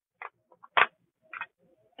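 Small plastic diamond-painting drill containers being handled in a plastic storage tray: three short light clicks, the loudest a little under a second in, with faint rustling between.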